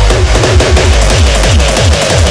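Loud crossbreed hardcore electronic music with a fast, steady run of kick drums over heavy bass.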